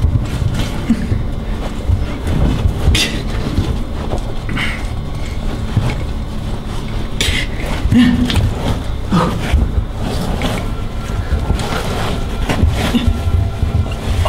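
Scraping, scuffing and irregular knocks of people crawling through a narrow brick drain tunnel, with rubbing and handling noise on the hand-held camera's microphone.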